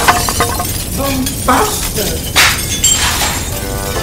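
Cartoon sound effects of debris breaking and clattering down: a run of sharp knocks and crashes, with a louder crash about two and a half seconds in, over music.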